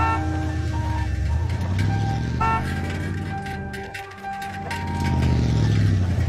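A motor vehicle's engine running, its low rumble and pitch shifting as it moves, fading about four seconds in and swelling again near the end, under light background music.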